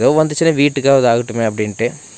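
A man talking, over a steady high-pitched insect chorus that keeps going beneath the voice.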